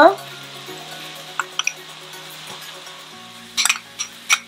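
Garlic butter and white wine sauce sizzling quietly in a nonstick pan under soft background music with sustained notes. Near the end there is a short, louder burst of sizzle as chopped garlic drops into the hot pan.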